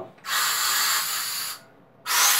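Refrigerant vapor hissing out of the opened valve of a small, partly empty refrigerant bottle held upright. It comes in one burst of about a second and a half that starts just after the valve is cracked and tapers off. Only gas escapes, not liquid.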